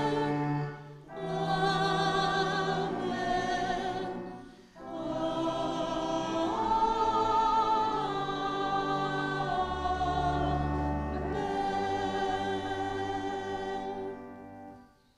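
Choir singing a sung Amen with pipe organ after the benediction: three held chords, with brief breaks about one second and about five seconds in, the last chord long and sustained.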